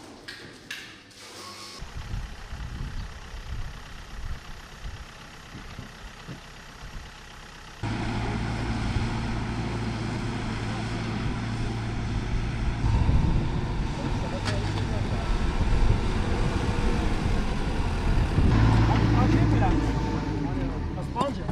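Backhoe loader's diesel engine running steadily, coming in suddenly about eight seconds in and getting louder near the end. Before that, lower uneven rumbling and a few knocks.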